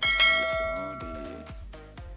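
A bell-chime sound effect struck once at the start, several clear tones ringing and fading away over about a second and a half, the notification-bell sound of a subscribe-button animation.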